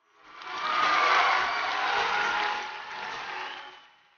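Studio audience applauding and cheering: the applause swells up within the first second and fades away toward the end.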